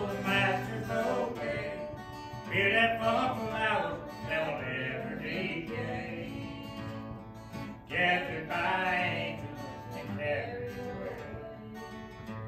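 A man singing a gospel song and strumming an acoustic guitar, with the chords ringing steadily under the sung phrases.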